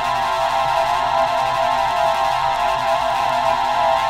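Electronic music: a steady, held synthesizer drone, a dense cluster of sustained tones with no clear beat.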